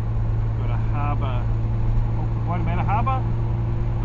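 Steady low drone of a car's engine and tyres heard from inside the cabin while driving at road speed.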